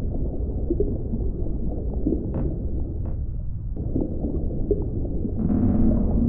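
Deep-sea ambience of a simulated submersible dive: a steady low underwater rumble with a few faint ticks. About five and a half seconds in, low drawn-out moaning tones swell in over it.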